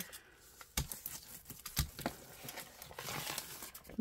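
Brown kraft paper bag rustling and crinkling as it is handled on a gel printing plate, with two light knocks about a second apart. A louder crinkling rustle near the end as the paper is peeled up off the plate.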